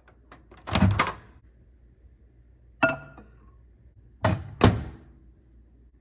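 A microwave oven door opens with a thunk about a second in. Near the middle a short, ringing clink follows, as the bowl is set inside on the glass tray. The door then shuts with two thuds a little after four seconds in.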